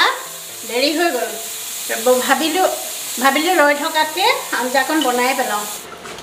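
Hot oil sizzling steadily in a cast-iron kadai as lentil-batter fritters (bor) deep-fry. A pitched, voice-like melody runs over it, and the sizzling cuts off near the end.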